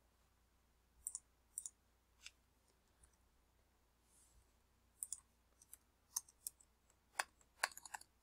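Faint computer keyboard keystrokes: single clicks in the first half, then a quicker irregular run of clicks in the second half.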